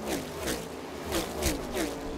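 A person's voice, indistinct, in short falling syllables.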